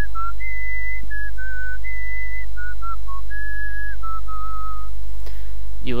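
A man whistling a short melody: a run of about a dozen clear held notes, each a fraction of a second long, stepping up and down and stopping about five seconds in. A steady low mains hum sits underneath.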